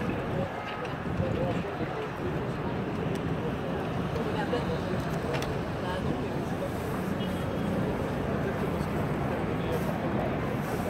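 Outdoor city ambience: a steady background murmur of distant voices and urban noise, with no single event standing out.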